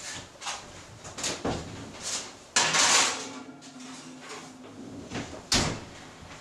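Oven door of a gas range pulled open, a foil-covered glass baking dish slid inside with a clatter, and the door shut with a bang near the end.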